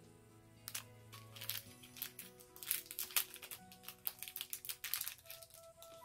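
A small plastic packet crinkling and crackling as it is handled and opened, a quick run of crackles starting about a second in, over quiet background music with held notes.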